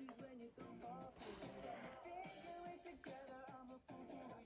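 Pop song with a sung lead vocal over a backing track, playing quietly.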